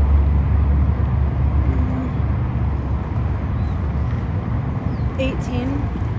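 Steady low outdoor rumble of background noise, with faint speech about five seconds in.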